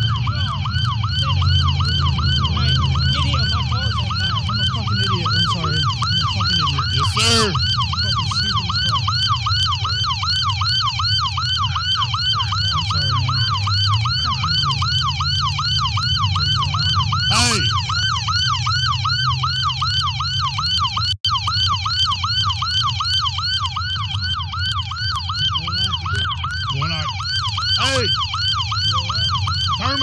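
Police car siren sounding in a rapid yelp, about three to four rising-and-falling sweeps a second, steady throughout, over a low rumble, with a few brief knocks.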